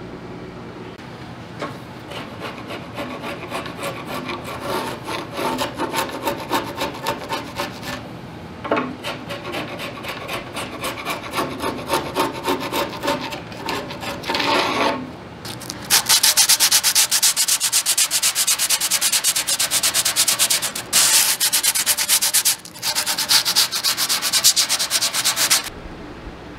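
Steel chisel scraping old dried glue off the oak bookcase's loosened joints in quick repeated strokes, cleaning them for re-gluing. About two-thirds of the way in the scraping turns much louder and harsher, with hand sanding of the joint, pausing briefly twice.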